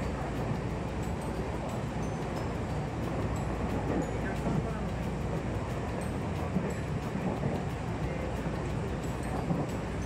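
Tobu Tojo Line train running at speed, heard from inside the car: a steady rumble of wheels on the rails and cabin noise.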